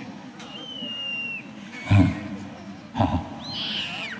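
Two sharp thumps about a second apart. A thin high whistle, falling slightly in pitch, is heard in the first second and a half, and another curved whistle comes near the end.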